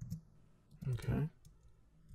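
A couple of quick clicks from computer keys or a mouse near the start, in a small quiet room.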